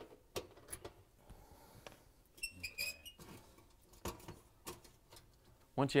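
Faint metal clicks and handling noises from removing the mounting screws of an electric oven's broil element, with a brief high-pitched squeak about halfway through.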